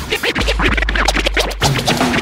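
Turntable scratching over a hip-hop beat: rapid back-and-forth record scratches sweeping up and down in pitch above a steady deep bass.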